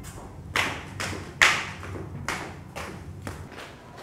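Footsteps on a hard tiled floor and steps: six or so sharp, irregular steps about half a second apart, the loudest about one and a half seconds in.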